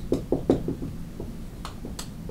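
Dry-erase marker writing on a whiteboard: a quick run of short taps and strokes, busiest in the first second, with a few more later.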